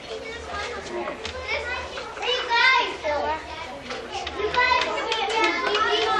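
Kindergarten children chattering and calling out over one another, several high young voices overlapping throughout.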